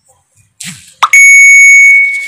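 A sharp click, then a loud, steady, high-pitched beep that holds for most of a second and fades away at the end.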